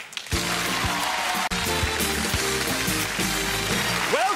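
Television show break music: a full musical piece with held chords, starting a moment in, with a brief drop about a second and a half in.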